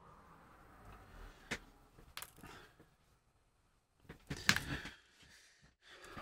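A few sparse, light clicks of small M3 nuts and bolts being picked up and handled. The clicks are single and spread out at first, then a short, louder cluster comes a little after four seconds in.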